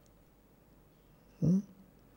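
Near silence (room tone), broken about one and a half seconds in by a man's short questioning 'hmm?' with a rising pitch.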